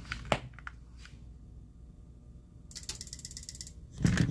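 Studio gear being powered up from a remote-controlled power socket. A few sharp clicks come near the start, the loudest about a third of a second in. Near the end comes about a second of fast mechanical ticking as the equipment switches on.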